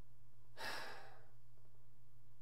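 A man sighs once with relief, a breathy exhale of about half a second that fades out, over a steady low hum.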